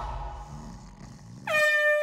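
A handheld air horn blasts one loud, steady note that starts suddenly about one and a half seconds in, after the tail of a music track fades out.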